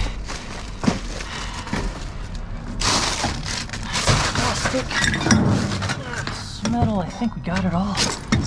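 Gloved hands rummaging through trash in a dumpster: plastic bags crinkling and cardboard and loose debris shifting, in irregular bursts with sharp knocks.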